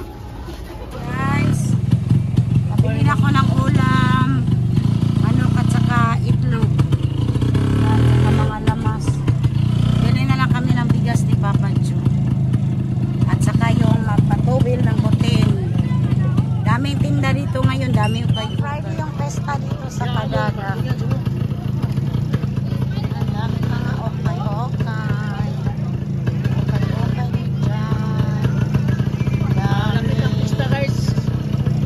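Motorcycle engine of a passenger tricycle running steadily during a ride, heard from inside the sidecar cab. It starts about a second in and dips briefly about a third of the way through, with voices and music over it.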